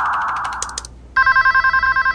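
A telephone ringing, an electronic trill that warbles rapidly between two tones, starting about a second in after a hiss fades away.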